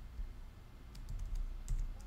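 A few light clicks at a computer, about a second in and again near the end, over a low steady hum.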